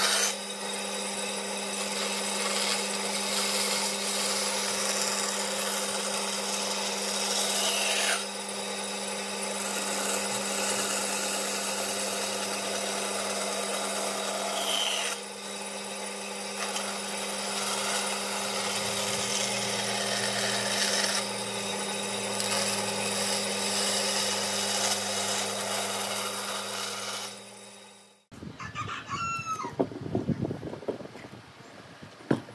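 Benchtop bandsaw running and cutting through a wooden board: a steady motor hum under the rasp of the blade in the wood. The saw sound cuts off suddenly about two seconds before the end, and a rooster crows.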